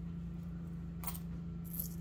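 Small metal charms clinking against each other as they are picked through in a cupped palm: a few light clinks, one about a second in and a couple near the end, over a steady low hum.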